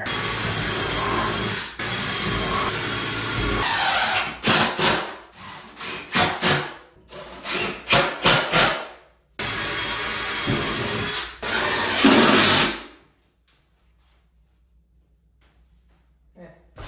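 Cordless drill driving long screws through a vanity cabinet's top rail into wall studs. There are several long runs, a stretch of short stop-start bursts in the middle, and then the drill stops a few seconds before the end.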